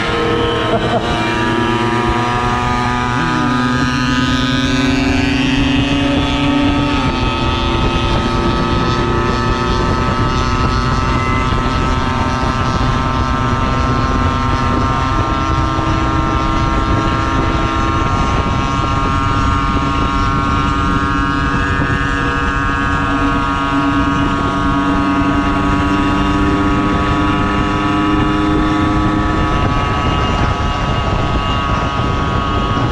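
A 50cc moped engine running steadily at cruising speed under the rider, its pitch stepping up or down a few times, with wind rushing over the microphone.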